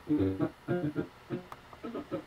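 A man singing over an internet voice call, heard thin through the laptop speaker and coming in short broken phrases as the connection breaks up.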